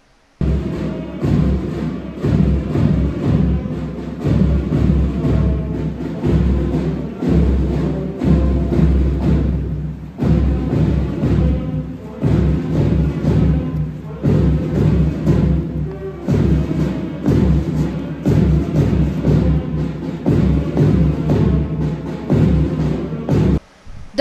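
School marching band's snare and bass drums playing a steady march beat, starting abruptly and cutting off just before the end.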